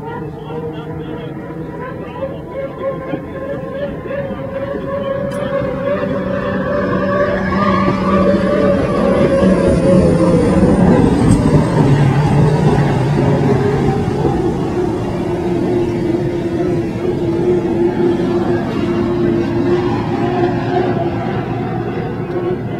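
Racing hydroplane's engine running flat out as the boat approaches, growing louder, passing about eleven seconds in with a drop in pitch, then fading as it runs away.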